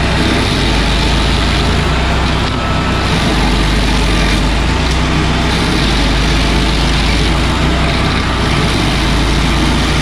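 A heavy engine running steadily at a constant speed, with no revving.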